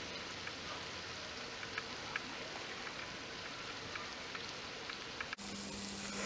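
Potato pakoras deep-frying in a small steel pot of oil: a steady sizzle with scattered small pops and crackles. Near the end the sound changes suddenly and a low hum joins in.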